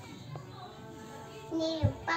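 A child's voice singing a short held note about one and a half seconds in; the pitch drops at the end, where there is a brief low thump.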